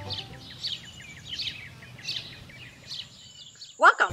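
Small birds chirping, a short falling chirp repeated every second or less, over music fading out in the first moments. Near the end, a brief, loud rising whistle glide.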